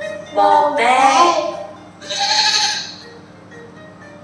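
A woman and a small child speaking in short spells, the second one higher and brighter, with music playing in the background.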